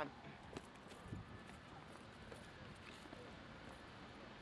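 Faint footsteps on a flat roof: a few light, irregular taps and scuffs over a quiet outdoor background.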